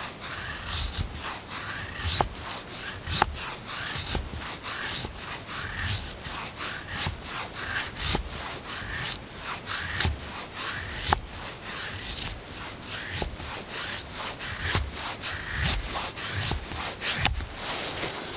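Knife blade shaving curls down a wooden stick, making a feather stick: a steady run of short scraping strokes on the wood, about two a second.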